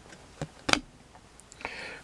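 A trading card handled and set down on a tabletop: two light clicks about a third of a second apart, then a soft brief rustle near the end.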